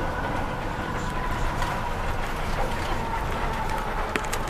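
Inside a moving bus's passenger cabin: the bus engine and road noise make a steady low rumble, with a faint whine that sinks slightly in pitch near the end.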